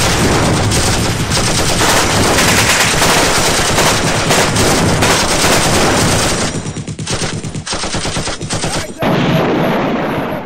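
Sustained rapid automatic gunfire, densely packed shots for about six and a half seconds, then thinning to scattered shots. A steadier noise comes in near the end.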